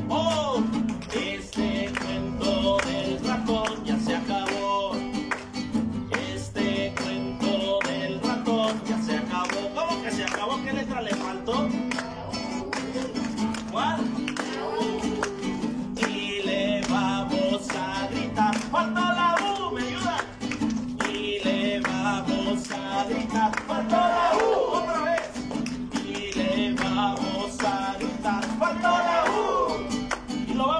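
Acoustic guitar strummed steadily, with a man singing a children's song over it.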